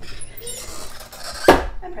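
Heat press being closed on a hoodie: a rustle of the cover sheet and the upper platen, then a single loud metallic clank about a second and a half in as the platen clamps shut.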